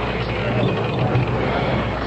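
Roulette ball rolling and rattling around a spinning roulette wheel, a steady rolling rattle between the close of betting and the call of the winning number.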